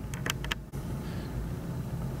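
A few small clicks and rubbing sounds in the first half-second as the old fuel filter is pulled off the end of a chainsaw's fuel line, over a steady low hum.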